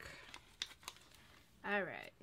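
Paper stickers being handled: faint crinkling of sticker sheets and backing paper, with a few light clicks.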